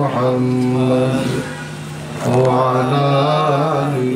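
A man chanting Arabic salawat on the Prophet in long held notes with wavering pitch: one phrase, a softer dip, then a second drawn-out phrase beginning about two seconds in.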